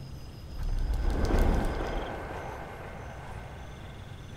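A deep low rumble that swells to a peak about a second and a half in and then fades away, with faint high-pitched tones and short, evenly spaced beeps running over it afterwards.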